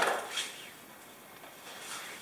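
Cord being pulled through a carabiner at a nylon tarp's corner: a short rustle right at the start that fades within half a second, then quieter handling noise.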